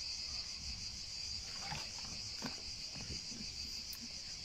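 A steady, high-pitched chorus of insects chirring.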